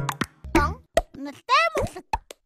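End of a children's theme song, its last low note held briefly. It is followed by a high-pitched child's or cartoon voice calling out a few short words, with popping sound effects between them.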